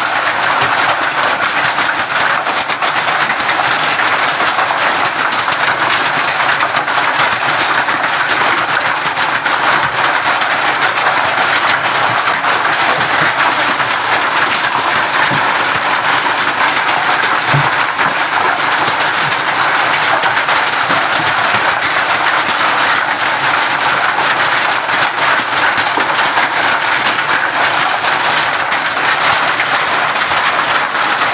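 Hail and heavy rain hitting a corrugated metal roof: a loud, dense, steady clatter of countless small impacts on the metal sheets.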